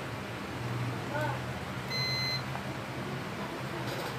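A multimeter's continuity beeper gives one short, steady high beep of about half a second, about two seconds in, over a low steady hum.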